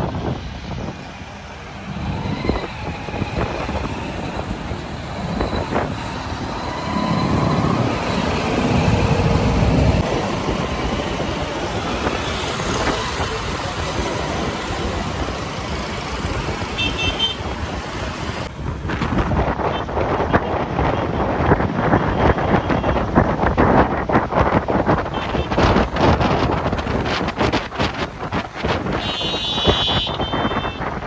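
Road traffic noise from motorcycles and other vehicles moving along a highway, with short horn toots about halfway through and again near the end.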